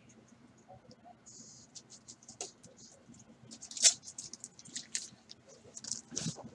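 Quiet rustling and light clicks of someone rummaging for a magnetic card holder among card supplies, with one sharper click about four seconds in.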